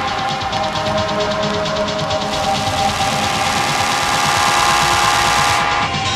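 Techno music: held synth notes over a rapid, even pulse, with a hiss that swells in about two seconds in and cuts off just before the end, like a build-up.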